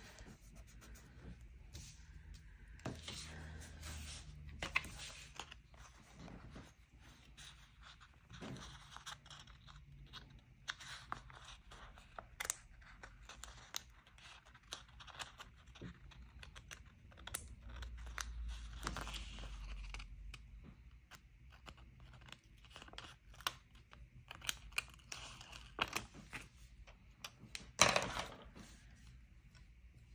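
Paper sticker sheets and washi pieces being handled, peeled and pressed on a tabletop: rustling, crinkling and scraping with many small clicks from tweezers, and one louder crackle near the end.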